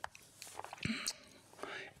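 A man breathing softly close to a microphone, with faint mouth noises: a sharp click right at the start and a couple of small ticks later.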